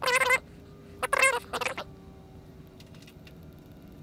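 An animal calling twice, high-pitched with a wavering pitch: a short call at the start, then a longer one about a second in.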